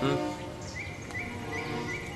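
Soft background score of sustained notes over a low outdoor hiss. In the second half a short, even high chirp repeats about four times.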